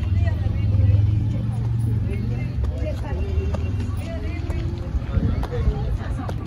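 People talking faintly, over a steady low rumble that is loudest in the first two seconds, with a few light knocks near the end.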